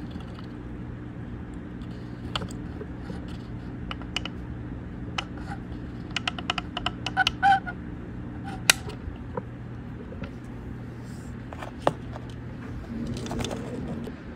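Scattered light clicks and taps from soldering work on an e-bike motor controller's circuit board, with a quick run of clicks in the middle. A steady low hum runs underneath and stops near the end.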